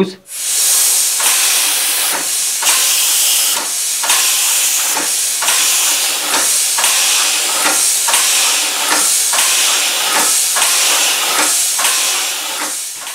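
Homemade single-cylinder compressed-air engine running: a loud hiss of compressed air starts just after the start and pulses with each stroke, with regular clicks from its cam-operated valve gear. The cast-iron flywheel is turning at about 51 rpm.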